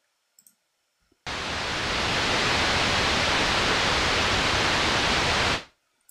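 White noise from Ableton's Operator synth, its oscillator set to noise with no resonance and the filter fully open, played as one long held note. It starts abruptly about a second in, holds steady and even for about four seconds, then stops.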